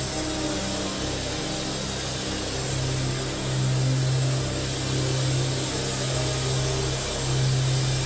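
Soft background music of long-held low chords that change slowly, over the murmur of a large congregation praying aloud.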